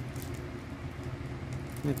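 Faint handling of shrink-wrapped plastic cream tubs over a steady low hum of room noise, with no distinct knocks or crinkles.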